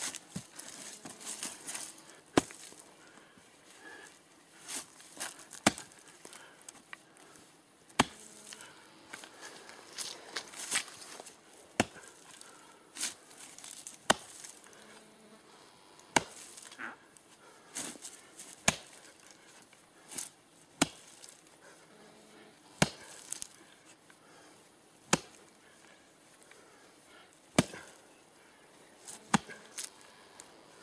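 An axe chopping down into a root buried in a dirt track: about fifteen sharp, separate blows, one every second or two.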